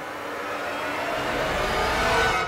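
A rushing noise swells steadily louder over about two seconds, like a whoosh riser sound effect.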